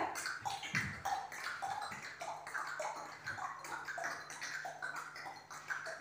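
Children clicking their tongues against the roof of the mouth like horse hooves, an articulation warm-up. The clicks are quiet, short and hollow, in an even rhythm of about two to three a second.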